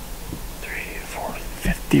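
A man whispering in short, excited phrases over faint background hiss.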